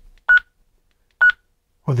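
Two short key beeps from a Retevis RB27B GMRS radio, about a second apart, as its arrow button is pressed to step down through the receive tone codes.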